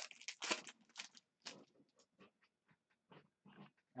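Foil trading-card pack wrapper crinkling in the hands in a quick cluster of crackles, then a few faint ticks and rustles of cards being handled.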